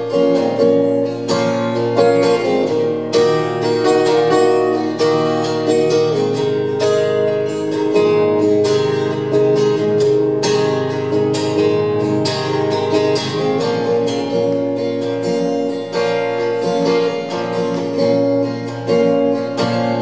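Solo steel-string acoustic guitar playing an instrumental break, strummed chords ringing steadily with no voice.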